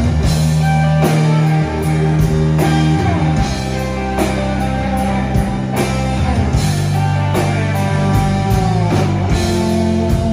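Live rock band playing an instrumental passage with no singing: electric guitars, bass guitar and drum kit keeping a steady beat.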